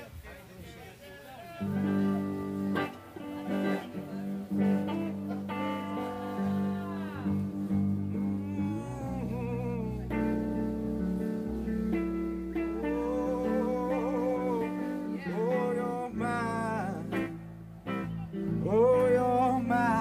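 Live rock band of electric guitar, bass guitar and drums playing an original song, coming in at full volume about a second and a half in, with bending guitar lines over steady low bass notes.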